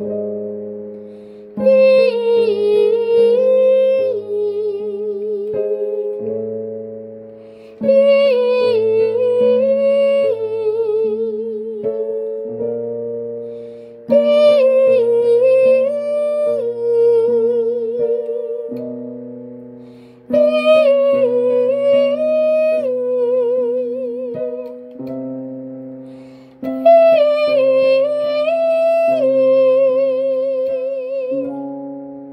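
A female voice singing a vocal warm-up on the vowel 'ee', a six-note 3-2-1-2-3-1 scale pattern ending on a held note with vibrato, over chord accompaniment. The pattern is sung five times, each repeat a little higher in pitch.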